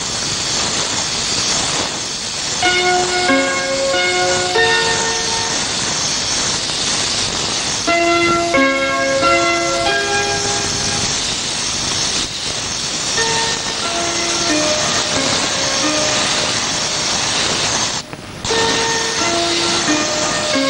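Background music, a slow melody of held notes, over a loud, steady hiss from a compressed-air paint spray gun. The hiss drops out briefly near the end.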